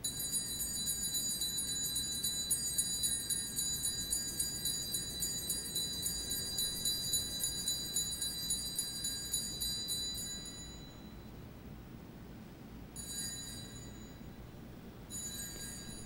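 Altar bells (Sanctus bells) rung in a steady jingling run for about ten seconds, then twice briefly near the end, marking the elevation of the consecrated chalice at Mass.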